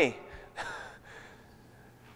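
A man's spoken word trails off at the start. About half a second in comes a short, breathy sound like a gasp or a quick breath, then quiet room tone.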